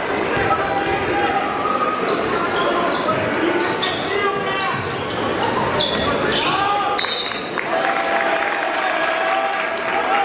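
A basketball being dribbled on a hardwood gym floor, with short high sneaker squeaks from players running on the court, over a steady background of crowd voices and shouting.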